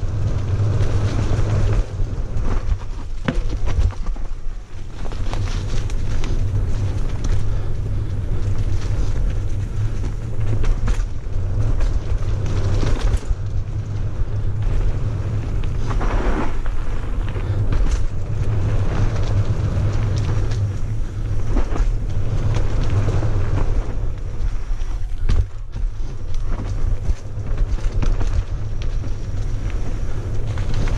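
Mountain bike descending a dirt singletrack at speed: a constant heavy low rumble of wind and motion, with the tyres running over dirt and the bike clattering and knocking over bumps all the way.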